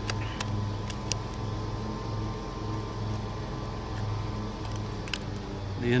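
A few light clicks from handling an old 1970s Canon film camera as its back is unlatched and opened, over a steady low hum.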